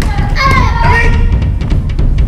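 A child's high-pitched shout, typical of a kiai, during sparring with padded soft weapons, with sharp clacks of the weapons striking, over a loud low rumble.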